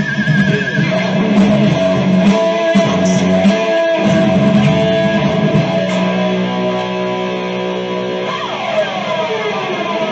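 EVH Wolfgang electric guitar played through an amplifier: a run of changing notes, then a held, ringing chord about six seconds in. Near the end its pitch slides steadily downward.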